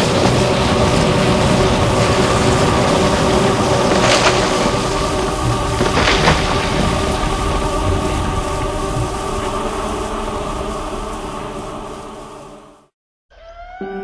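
Storm sound effects: heavy rain with cracks of thunder about four and six seconds in, laid under a sustained music chord. Everything fades out near the end and a gentle music piece with distinct notes begins.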